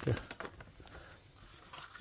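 Faint rustling and light taps of a paper greeting card and envelope being handled and laid down on a wooden desk.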